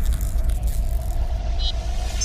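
Logo sting sound effect: a deep rumble under a held middle tone and airy shimmer, slowly fading. A brief high chime sounds near the end.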